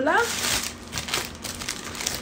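A paper takeout bag crinkling and rustling as it is handled, in a quick run of crackles. There is a short rising vocal sound at the very start.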